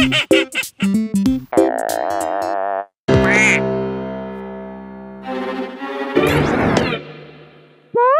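Cartoon music and sound effects: short staccato notes and a wobbling tone, then a cartoon duck's quack about three seconds in over a long held chord that slowly fades. Near the end a whooshing rush with a rising sweep.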